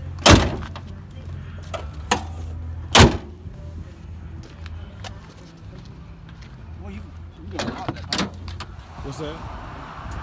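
Buick Grand National's turbocharged 3.8-litre V6 idling steadily. Two loud sharp knocks come just after the start and at about three seconds, and a few clicks and rattles come near the end.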